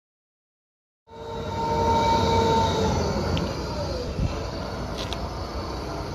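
PowerBully 18T tracked carrier running, its Cummins QSB diesel engine and drive giving a low rumble with a steady whine over it that slides down in pitch about three to four seconds in. The sound starts suddenly about a second in, with a few faint clicks later on.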